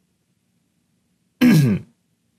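A person clearing their throat once, about one and a half seconds in: a short vocal sound that drops in pitch.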